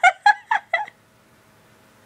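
A young woman's laughter: four short, quick bursts over the first second, then it stops.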